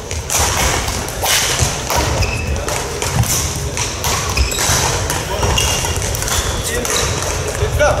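Badminton rally in a large echoing sports hall: rackets striking the shuttlecock in a run of sharp hits, with brief squeaks of shoes on the court floor and a steady murmur of voices from around the hall.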